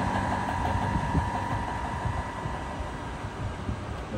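Three-phase induction motor on an inverter drive running down after being switched off. Its running noise eases off slowly, and a high whine fades out over the first second or two.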